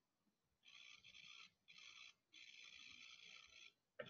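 Near silence: faint room tone, with a faint high-pitched noise coming and going three times.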